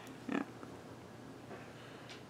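A single short nasal grunt from a person, about a third of a second in, over faint room tone.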